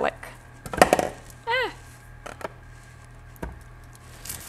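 A kitchen knife knocking on a wooden cutting board a few separate times, spaced out, as onion and garlic are cut up by hand.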